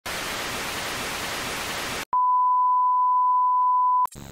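Television static hiss for about two seconds, cutting off abruptly. After a brief gap comes a steady, pure test-pattern beep tone that goes with the colour bars.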